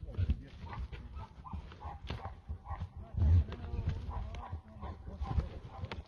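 Two bulls fighting with their horns locked: a run of knocks and thuds from horns and hooves, mixed with animal calls, and a loud low thump a little after three seconds in.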